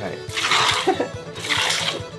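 Milk squirting from a cow's teat as it is milked by hand: two short hissing squirts about a second apart.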